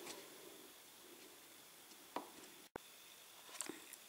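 Near silence: room tone with two faint short clicks, one a little over two seconds in and one near the end.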